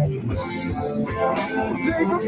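A band playing a song led by guitar, in a short instrumental stretch between sung lines.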